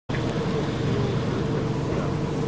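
Cars driving slowly past on a road, giving a steady engine and tyre noise.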